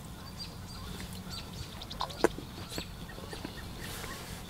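Close-miked chewing and wet mouth clicks from eating a slice of cauliflower-crust pizza, with one sharp click a little over two seconds in, over a steady low hum.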